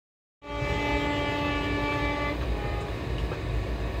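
Indian Railways locomotive horn sounding one long blast of about two seconds that cuts off sharply, over the low rumble of a moving train.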